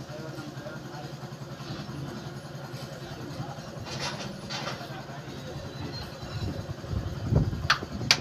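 Steady low mechanical rumble, like an engine running nearby, with a few light metal clinks about four seconds in and a louder thump with a sharp click near the end.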